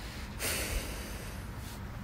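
A short breath out through the nose about half a second in, over faint steady hiss.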